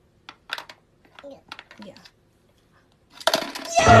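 Plastic toy coins clicking and knocking against a hard plastic piggy-bank toy as a coin is pushed into its slot, a quick series of light clicks. Near the end there is a louder burst, and the toy's sung tune starts as the coin goes in.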